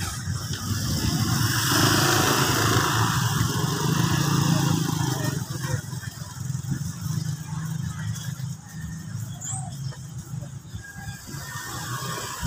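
Busy street-market din with a motorcycle engine passing close by, loudest from about one to five seconds in, over murmured background voices.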